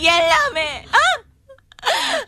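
A woman wailing and crying out in distress, in a high, wavering voice; she breaks off a little past one second and cries out again near the end.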